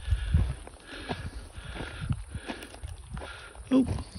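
A hiker's footsteps crunching on a rocky, gravelly trail, a few irregular steps; a short exclaimed 'Oh!' near the end.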